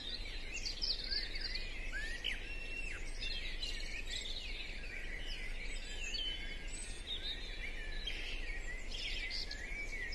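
Dawn chorus of garden songbirds: many birds singing at once, with overlapping chirps, trills and short whistled slides going on continuously.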